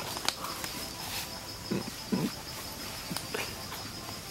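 A person's short, closed-mouth grunts, twice about two seconds in, with a few mouth clicks, as he tastes a larva from a jungle seed.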